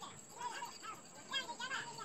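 Indistinct, high-pitched people's voices chattering in the background, with a thin steady high whistle running under them.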